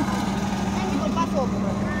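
A crane truck's engine running steadily at a constant hum, powering its crane while concrete posts are lifted off the bed, with faint voices over it.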